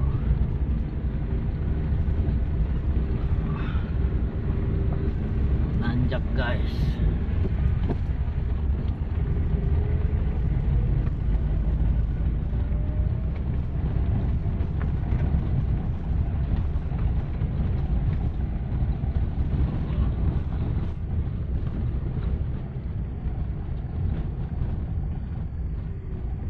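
Car cabin noise while driving slowly over a rough, unpaved dirt and gravel road: a steady low rumble of tyres, suspension and engine.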